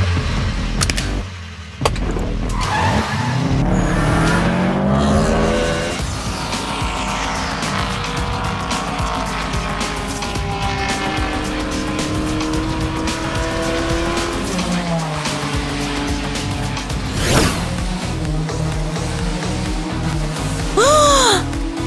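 Sports car engines accelerating hard in a race, their pitch climbing in rising sweeps as they rev up, with tyres squealing.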